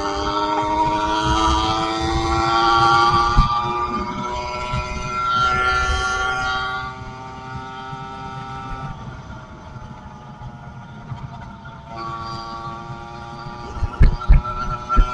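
A 110cc two-stroke engine on a motorized bicycle running under throttle. Its pitch climbs over the first few seconds, then it drops back and runs quieter from about seven seconds in, before picking up again near the end.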